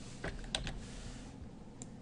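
A few separate keystrokes on a computer keyboard, most of them in the first second, as text in a field is deleted and edited.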